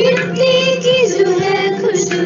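Schoolgirls singing a patriotic song together, holding long notes that step down in pitch about a second in, over a steady instrumental drone.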